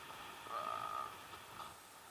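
A single steady, beep-like tone lasting about half a second, followed by a few faint short blips.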